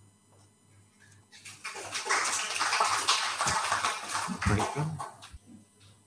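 An audience applauding for about four seconds, starting about a second and a half in, with a few low thumps near the end.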